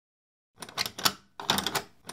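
Key rattling and clicking in a door lock, a quick run of sharp clicks starting about half a second in. The key will not turn because it does not fit the lock.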